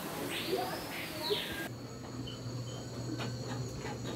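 Indoor rainforest exhibit ambience: a steady hiss of trickling water with a short raspy animal call that rises and falls over about a second. Under two seconds in, the sound cuts abruptly to a steady low hum.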